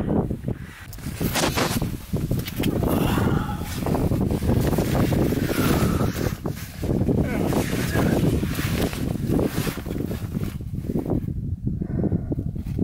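Rustling and scraping of clothing and gear against rock as a person shifts about in a tight cave crawlway, mixed with wind buffeting the microphone from the steady breeze through the cave. The noise is rough and continuous, with a brief dip about a second in.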